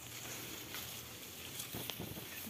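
Quiet outdoor background hiss with a few faint, short ticks; no distinct sound stands out.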